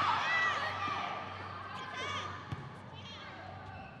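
Volleyball rally in a gymnasium: players' voices calling out in the first second or so, then a few short squeaks and a sharp hit on the ball about two and a half seconds in.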